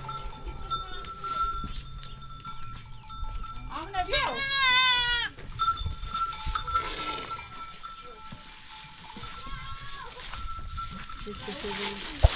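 Goats bleating. One loud, wavering bleat lasts a little over a second about four seconds in, and a shorter bleat comes near ten seconds.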